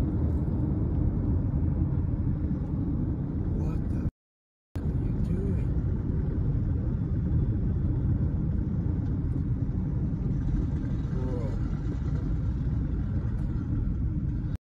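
Road and engine noise heard inside a moving car's cabin: a steady low rumble that cuts out for about half a second around four seconds in.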